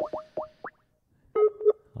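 Electronic sound effect: four quick rising bloops in the first second, then two short, lower tones near the end.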